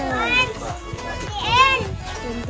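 A child's high-pitched voice calls out twice, the second call louder and rising then falling, over other voices and background music.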